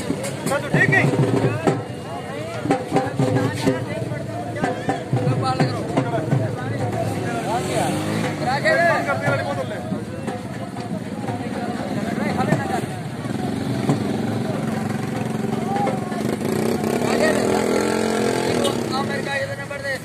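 Crowd of many people talking and calling out over one another, with no single clear voice.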